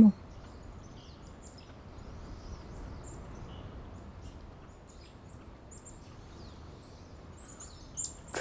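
Quiet outdoor ambience: a steady low background hiss with small birds chirping briefly and repeatedly throughout.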